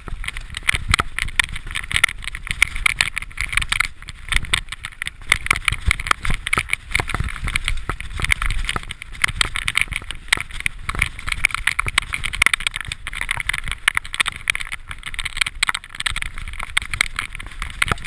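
Mountain bike descending a rough, rocky forest trail, heard from a handlebar-mounted camera: continuous irregular rattling and clattering of the bike over rocks and roots, over a low rumble of wind on the microphone.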